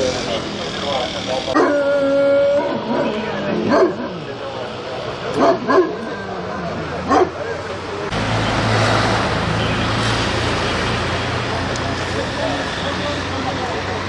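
A dog barking and crying out: one held, whining call early on, then several short sharp barks. About eight seconds in it gives way to a steady rushing noise with a low hum.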